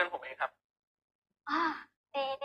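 Only speech: two short snatches of drama dialogue, one right at the start and one about a second and a half in, with dead silence between.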